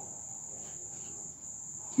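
A steady, unbroken high-pitched tone over faint background hiss.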